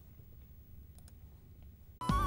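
Very quiet background with a faint low hum and a few soft clicks, the clearest about a second in.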